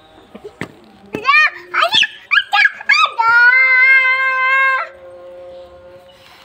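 A run of short, rising, high-pitched cries, then one long steady cry that holds for about a second and a half. Before them come two sharp slaps, like a sandal striking concrete.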